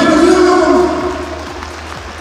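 A man's voice amplified through a PA system, held on one long drawn-out vowel for about a second, then trailing off.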